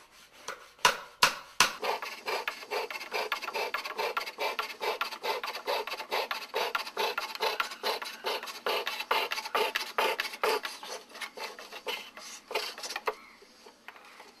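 A hand tool scraping wood in a steady rhythm of about three strokes a second. The strokes thin out and stop shortly before the end.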